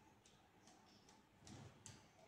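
Near silence: room tone with faint, irregular small clicks a few times a second.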